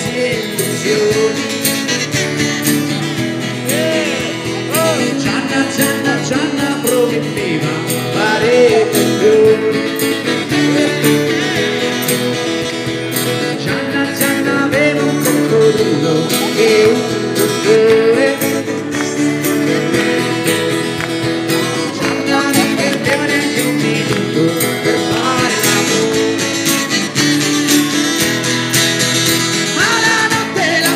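A street musician singing over his own steadily strummed acoustic guitar.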